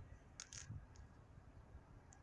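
Near silence, with a few faint clicks about half a second in.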